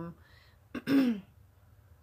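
A woman clears her throat once, about a second in: a brief rasp ending in a voiced sound that falls in pitch.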